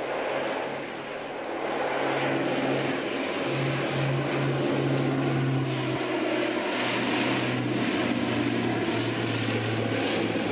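The four Wright R-3350 radial piston engines of a Lockheed Constellation, a deep steady propeller drone, growing louder over the first two seconds as the airliner passes low on approach with its gear down.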